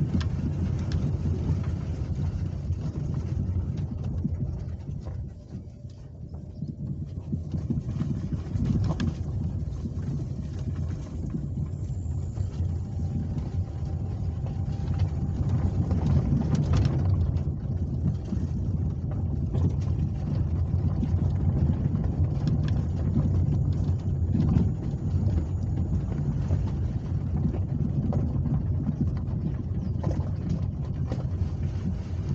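Car moving at low speed, heard from inside the cabin: a steady low engine and road rumble that dips briefly about six seconds in.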